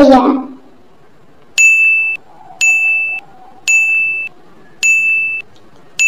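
Quiz countdown-timer sound effect: a high electronic ding sounding about once a second, five times, each tone starting sharply and lasting about half a second, as the time to answer runs out.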